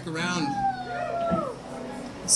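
Quiet electric guitar notes gliding and bending up and down in pitch, with one long note falling slowly through the middle.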